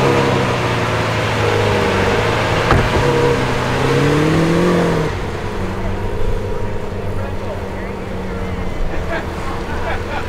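Lamborghini Aventador V12 running, then revving up as the car pulls away; the pitch climbs for about a second and a half, then drops sharply about five seconds in. The engine carries on at a steadier, quieter note as the car moves off. A single sharp knock comes about three seconds in.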